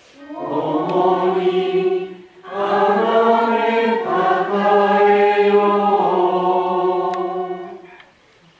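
A congregation singing a chanted response in unison, two phrases, a short one and then a long one held almost to the end: the people's sung answer at the unveiling of the cross in the Good Friday liturgy.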